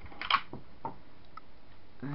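A few faint clicks and rustles of a handheld camera being moved about in a small room, the last a small tick about a second and a half in.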